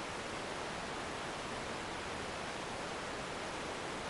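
Steady, even background hiss with no other sound in it.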